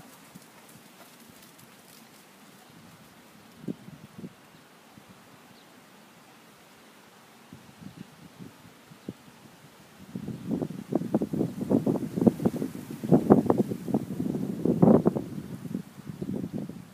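Hooves of a horse on sand arena footing: a few faint thuds for the first ten seconds, then a dense run of louder, irregular thuds through the last six seconds.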